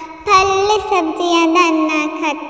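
A Hindi nursery rhyme sung in a child's voice, with a brief dip just at the start before the singing comes back in.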